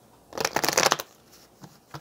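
A deck of cards being shuffled: one quick run of rapid card flicks lasting about half a second, starting about a third of a second in.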